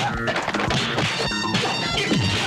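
Dubbed punch sound effects in a film fight: several hard whacks and crashing impacts over a background music score.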